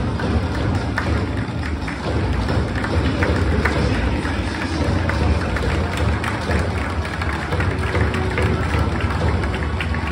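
Music playing over a stadium's public-address system, with a strong, steady bass.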